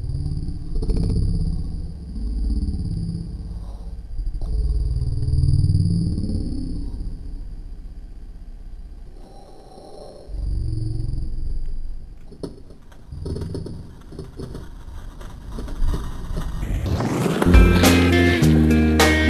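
Skateboard wheels rolling over paving stones, a low rumble that swells and fades, with a few sharp clacks of the board late on. Guitar music comes in loudly near the end.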